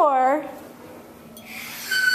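A classroom percussion instrument played as the sound effect for the oven door opening: a brief scrape about a second and a half in, then a steady high ringing tone starting near the end. The narrator's last word trails off in the first half-second.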